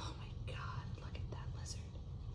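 A person whispering softly in a few short breathy bursts, over a steady low rumble.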